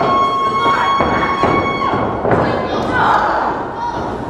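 Wrestlers hitting the ring canvas: several sharp thuds of bodies landing on the mat, with voices shouting around them.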